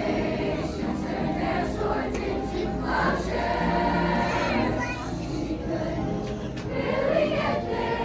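Youth choir of girls' and boys' voices singing together in sustained, held notes.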